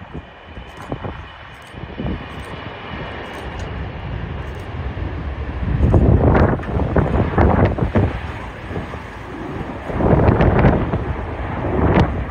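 Fokker 100's two rear-mounted Rolls-Royce Tay turbofans at takeoff power as the jet rolls, lifts off and climbs away, with a high whine at first. Gusts of wind rumble on the microphone about 6 s and 10 s in.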